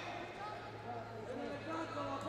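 Faint, distant voices of people talking in a large sports hall, over a steady low hum.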